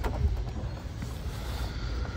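Low store background noise: a steady low rumble and faint hiss with a faint steady hum, and a single soft click right at the start.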